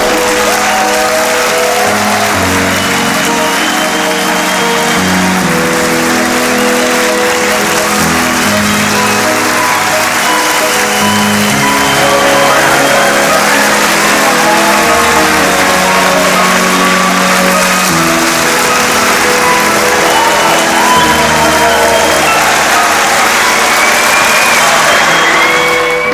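An audience applauding loudly, with a few cheers, over music with sustained notes.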